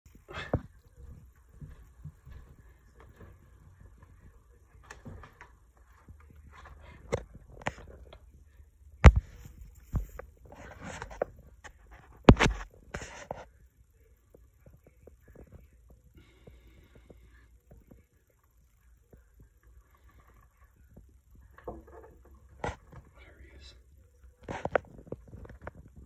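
Hushed, indistinct voices with a few sharp knocks, the loudest two about nine and twelve seconds in.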